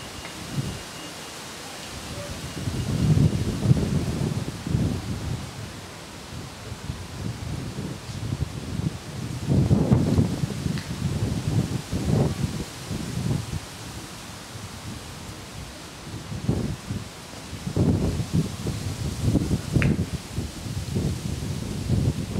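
Wind buffeting the camera microphone in uneven low gusts that come and go.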